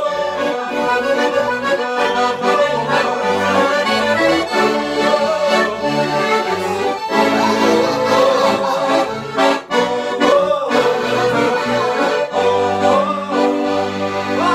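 Two accordions playing a traditional Portuguese dance tune together: a busy melody of held reed notes over a steady, regularly changing bass.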